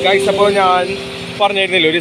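A man talking over background music with steady held notes.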